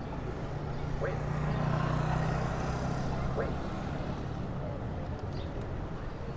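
City street traffic: the low engine rumble of a passing vehicle swells about a second in, peaks around two seconds and fades away, over steady road noise.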